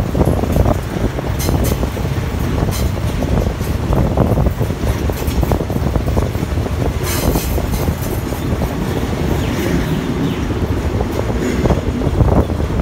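Thai diesel railcar commuter train (THN/NKF multiple unit) running along the track, heard from an open window: a steady rumble of wheels on rail with scattered clicks and knocks, and a short hiss about seven seconds in.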